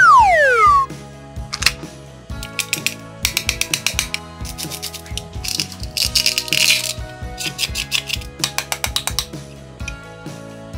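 Hook-and-loop fastener on a plastic toy eggplant tearing apart in short spurts of rapid clicks as a toy knife splits its halves, over background music. A falling whistle-like glide opens the stretch.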